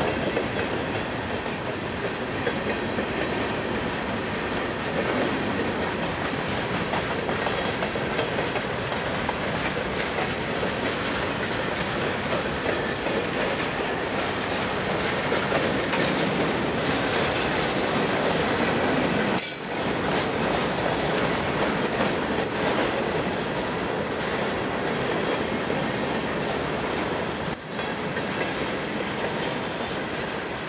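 Freight cars rolling past: a steady rumble and clatter of steel wheels over the rails, with short spurts of high wheel squeal in the second half.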